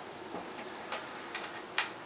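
A few light, scattered clicks from a plastic powerline adapter and its cable being handled, the sharpest near the end.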